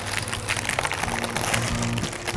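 Parchment baking paper crinkling and rustling as a baked round loaf is lifted out of a metal tart pan by its paper, over background music.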